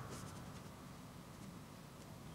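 Faint rubbing of fingertips spreading eyeshadow base over the eyelids, with a few soft clicks near the start.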